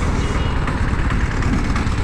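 BMW sport bike's engine running at low revs, idling as the motorcycle rolls slowly to a stop at the kerb, a steady low rumble.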